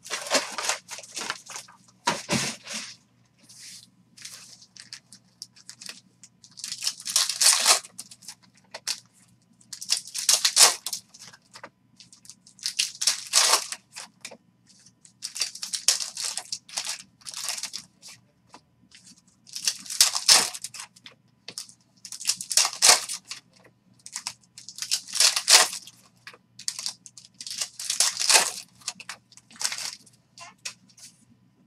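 Foil trading-card pack wrappers being torn open and crinkled, one pack after another: about ten sharp, rustling bursts, each a second or so long, coming every two to three seconds.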